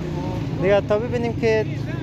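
Speech: a man talking in Dari, over a steady low rumble of street traffic.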